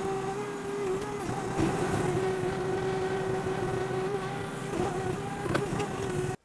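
Mini skid steer running steadily at a constant pitch, a pitched hum over engine noise, while its grapple carries a log; a few faint knocks near the end.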